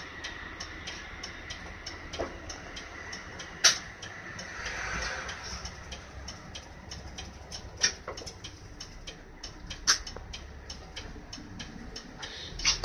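Interior running sound of an Isuzu Erga Mio (PDG-LV234N2) city bus: a low four-cylinder diesel hum under a steady ticking of about three to four ticks a second. Three sharp knocks stand out, about a third of the way in, two-thirds in and near the end.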